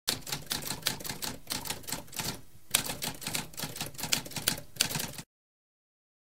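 Typewriter typing, a fast run of key strikes with a brief pause about two and a half seconds in, stopping suddenly after about five seconds.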